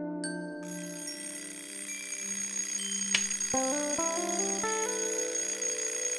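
Alarm clock bell ringing continuously, starting just under a second in, over held keyboard and guitar chords of the song's intro.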